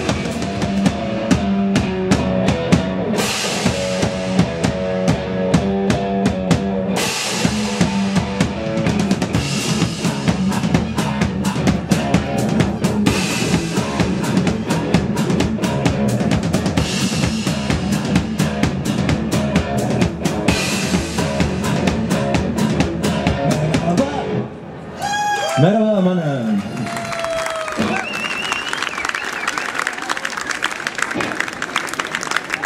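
Live rock band playing: electric guitar and drum kit with a singer. About 25 seconds in the song stops with a short falling note, and the audience starts applauding.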